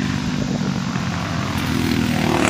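Small engines running in a steady drone: racing kart engines on warm-up laps mixed with a John Deere Gator utility vehicle moving close by. The drone grows a little louder near the end.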